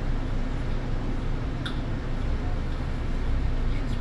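Steady low drone of a Solaris Urbino 18 articulated city bus's engine, heard from the driver's cab while the bus creeps in slow traffic. A single short click comes about one and a half seconds in.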